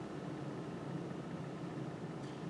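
Steady low hum of room ventilation with faint hiss: the room tone of a lecture room.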